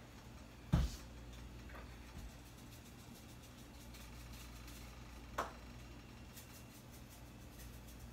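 Quiet kitchen room tone with a low steady hum, broken by one knock about a second in and a fainter click a little past the middle, from items being handled at the counter and sink.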